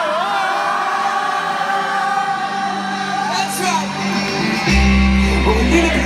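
Live stadium concert heard from within the audience: the crowd sings along to the band, with one man's voice loud and close to the microphone. A heavy bass comes in about five seconds in.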